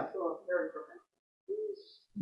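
Talk trailing off for about a second, then after a short pause one brief, low hummed sound like a murmured 'mm'.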